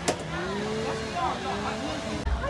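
Indistinct voices chattering over a steady low hum, with one sharp click just after the start.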